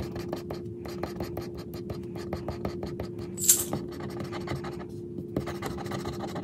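A plastic scratcher tool scraping the coating off a lottery scratch-off ticket in quick, repeated strokes, with one louder, sharper scrape about three and a half seconds in. A steady low hum runs underneath.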